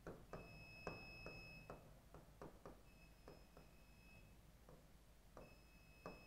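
Near silence, with faint irregular clicks of a pen tapping and writing on an interactive whiteboard. A faint high steady tone comes and goes three times.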